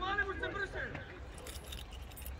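Voices shouting across an outdoor football pitch in the first second, over a steady low rumble of wind on the microphone, then a few light clicks about halfway through.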